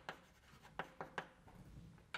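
Chalk writing on a blackboard: short, sharp chalk strokes and taps, three in quick succession about a second in, faint over a low room hum.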